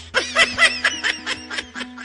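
A cartoon character's dubbed voice giving a rapid run of snickering laughs, about six a second.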